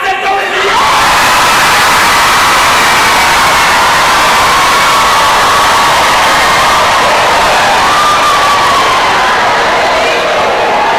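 A theatre audience bursting into loud laughter and cheering just under a second in and holding at a steady roar, with a high voice whooping above the crowd.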